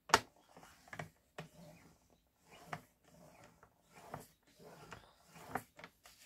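A sharp click right at the start, then faint, scattered rustles and light taps of cardstock being slid and nudged into position on a paper trimmer.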